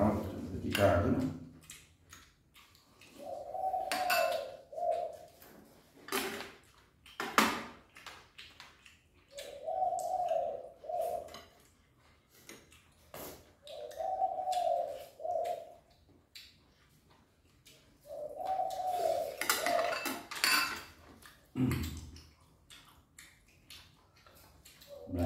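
Spoons and chopsticks clicking and clinking against ceramic bowls during a meal. A short mid-pitched whine, about a second and a half long, comes four times a few seconds apart.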